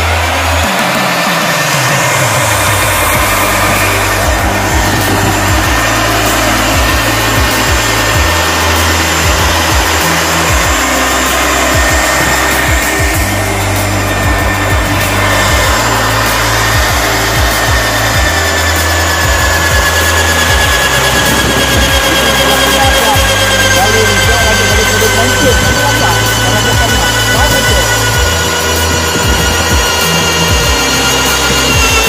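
Magnetic drill with a modified hole cutter running and boring into a rubber tyre, its motor tone slowly falling in pitch over the second half as the cutter is fed into the rubber.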